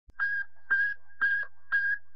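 Intro sound effect: four short pitched electronic tone pulses, about two a second, evenly spaced over a faint low steady hum.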